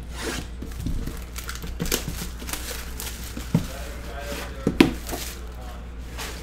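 Cardboard card box and its paper insert being handled: rustling and sliding with several short sharp taps and scrapes, over a low steady hum.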